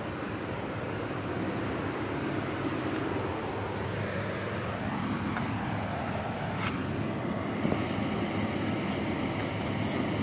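Steady urban outdoor rumble of city background noise, with one faint click about two-thirds of the way through.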